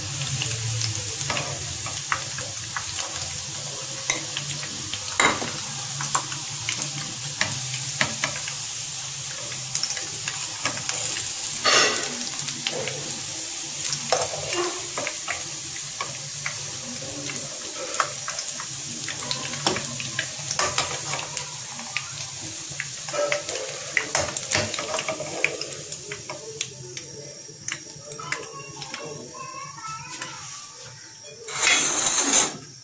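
Oil sizzling in a nonstick pot while fried chicken koftas are lifted out with a slotted metal spoon, which scrapes and clinks against the pot and the glass bowl again and again. The sizzle and clinking grow quieter near the end as the pot is emptied.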